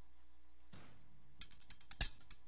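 Faint steady hum, then about one and a half seconds in a quick, uneven run of light, crisp percussion clicks begins: the opening of a hand-percussion mambo track.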